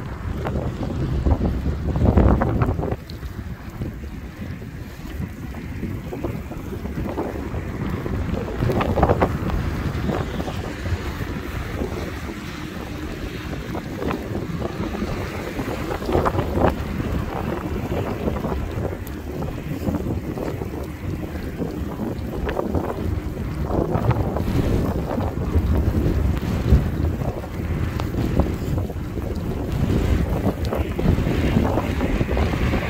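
Wind buffeting the microphone of a moving e-bike: a low, rushing noise that swells and drops in irregular gusts.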